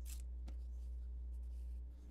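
Quiet room tone with a steady low hum and a couple of faint, brief rustles of watercolour paper being handled near the start.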